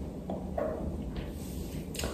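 Faint handling sounds of braided hair and a pair of scissors being brought up to a braid, with a light click near the end.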